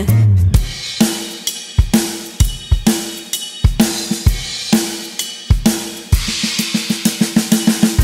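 Drum kit playing an instrumental break in a children's song: bass drum and snare hits with cymbals at an even beat. The hits quicken into a fast run near the end, leading into the next verse.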